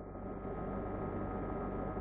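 Low steady hum and hiss of an old off-air TV recording, with a few faint held tones, before the intro music comes in.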